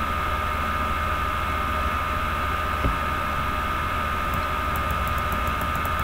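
Steady electrical hum and hiss of a computer recording setup, a low mains-type hum with a thin steady whine above it, and a faint click about three seconds in.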